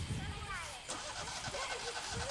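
Children's voices calling and chattering in the background, with a low, uneven rumble underneath and a short click about a second in.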